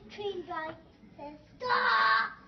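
A young boy's voice in sing-song play, then a loud, drawn-out cry about a second and a half in.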